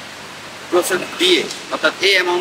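A man's voice talking, starting about three quarters of a second in after a short pause filled with a steady background hiss.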